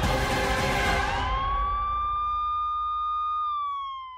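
Siren sound effect in a TV programme's title bumper. It opens with a sudden noisy hit that fades away. About a second in, a single siren tone rises, holds steady, and begins to fall slowly near the end.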